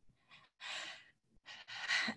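A woman's breathy sigh, a short exhale a little over half a second in, then a fainter breath near the end before she speaks again.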